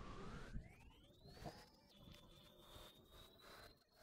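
Near silence, with only a faint high-pitched tone that rises over the first two seconds and then holds steady.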